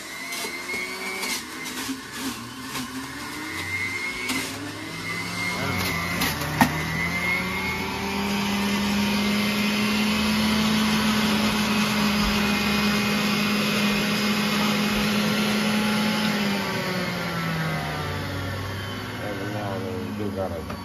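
Breville centrifugal juicer's motor running while celery and greens are fed through it, with knocks of the produce in the first few seconds. Its hum rises in pitch about seven seconds in, holds steady, then drops again near the end.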